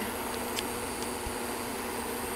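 Steady hum with an even hiss, like a fan or air conditioner running, with a couple of faint clicks.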